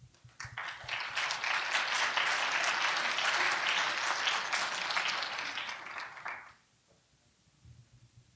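Audience applauding: the clapping builds within about a second, holds steady, then thins out and stops after about six seconds.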